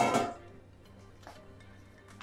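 A sharp clatter of kitchenware with a brief ring at the very start, dying away within half a second: the colander and wooden spoon knocking against the glass mixing bowl. Faint background music follows.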